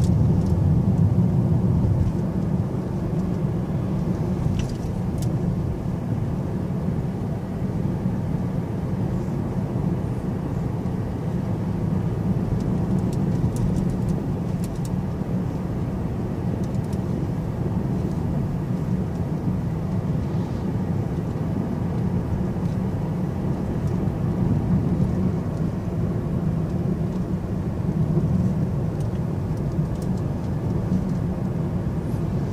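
Steady low rumble of a car driving on an asphalt highway, heard from inside the cabin: engine and tyre road noise at cruising speed, with a few faint clicks.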